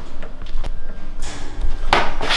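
A few light knocks and thumps, with a short rustling noise about one and a half seconds in.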